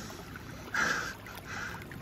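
A man's short, breathy, silent laugh: two puffs of air, the first stronger, with no voiced sound.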